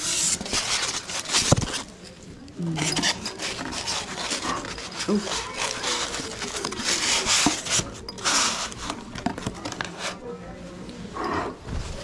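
Foam packing block and a cardboard box rubbing and scraping in the hands, in repeated rustling bursts, then a cloth bag being handled. Faint voices are heard in the background.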